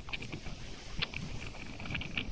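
Wind buffeting the microphone on a moving ship's open deck: a gusty low rumble with a faint rushing hiss, and scattered short ticks throughout.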